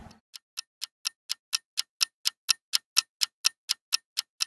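Clock ticking sound effect: sharp, evenly spaced ticks at about four a second, fading in over the first second.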